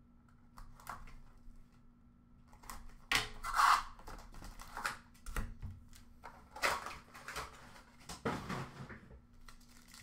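Cardboard trading-card hobby box being opened and its packs pulled out: cardboard tearing and scraping, with scattered taps and rustles. The handling is loudest about three to four seconds in and again near seven and eight and a half seconds, over a faint steady hum.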